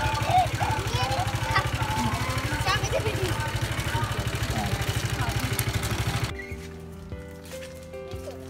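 A small engine idling with a steady, fast low throb, likely the ice cream vendor's motorcycle, with children's voices over it. About six seconds in it cuts off abruptly and is replaced by background music.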